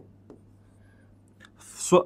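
A stylus writing letters on an interactive touchscreen board, making faint taps and strokes against a steady low hum.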